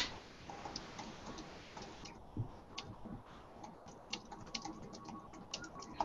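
Faint, irregular clicking of a computer keyboard being typed on.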